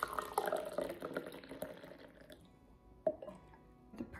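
Coffee poured from a glass carafe into a ceramic mug, a splashing trickle for about two seconds that then stops. A single knock about three seconds in, with faint background music.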